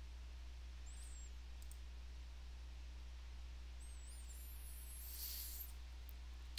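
Quiet room tone with a steady low electrical hum and a few faint computer-mouse clicks as a dropdown menu is worked.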